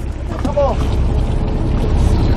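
Fishing boat's engine running steadily with a low rumble, over wind and sea noise on the deck.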